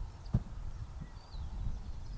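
Footsteps on gravel with low wind rumble on the microphone and one sharp click about a third of a second in; faint bird chirps.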